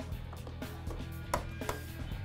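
A handful of short, sharp plastic clicks and taps as a small plastic access cover is pressed back into place in an E-Z-Go RXV golf cart's inner front body panel, over steady background music.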